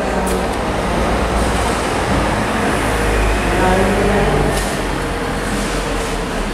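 Steady low rumble of room noise with indistinct voices murmuring in the background.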